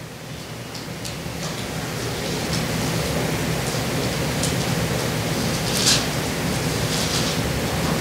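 Steady hiss of room background noise that grows louder over the first three seconds and then holds, with a few faint, short high sounds on top.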